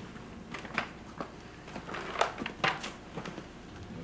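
Footsteps and shuffling of several people walking across a hard floor, heard as a few irregular light knocks over quiet room noise.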